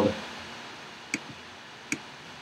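Two short, sharp clicks at the computer, under a second apart, over low steady room noise.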